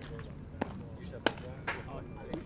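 Baseballs popping into leather catcher's mitts: three sharp pops within about a second, the loudest a little past the middle, over faint voices.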